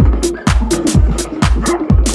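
Electronic dance music with a steady kick drum about twice a second and crisp hi-hat strikes between the beats.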